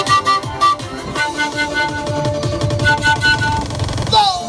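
Panpipe melody played into a microphone over backing music with a steady beat, held notes moving step by step.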